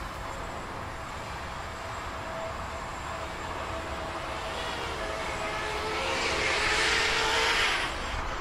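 Emax Hawk 5 five-inch FPV quadcopter's brushless motors and propellers buzzing in flight, their pitch wavering with the throttle. It grows louder over the last few seconds as the quad flies in close.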